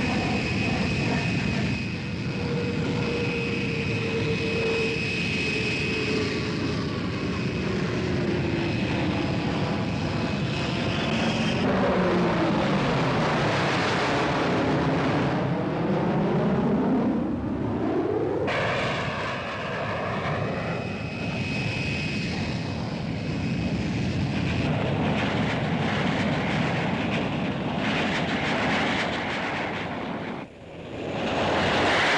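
Jet aircraft engines with a continuous rushing roar and a high steady whine. A lower tone slowly falls in pitch during the first third. In the middle, a stretch begins and ends abruptly, and within it the pitch sinks and then climbs back.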